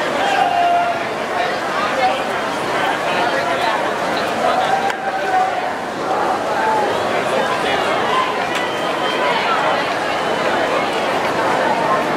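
Many spectators' voices chattering and shouting at once in an indoor pool hall, cheering on swimmers in a race, with no single voice standing out.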